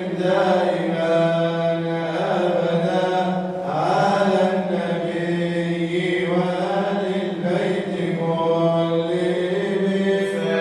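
A man chanting Arabic Prophetic praise poetry (madih) unaccompanied into a microphone, in long held, ornamented notes that glide up and down, over a steady low drone.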